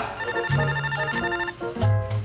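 Apartment door intercom ringing with a trilling electronic tone for about a second, over background music with a bass line.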